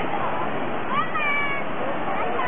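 Steady wash of breaking surf on a beach. About a second in, a single brief high cry rises and then holds.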